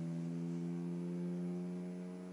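Guitar string sustained by an EBow's electromagnetic field, a steady unbroken tone with a full set of evenly spaced overtones, still held at about 82.4 Hz (low E) and not yet at the new target pitch.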